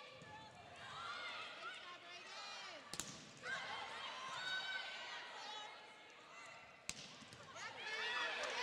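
Volleyball struck hard twice, about four seconds apart, over a background of crowd and player voices.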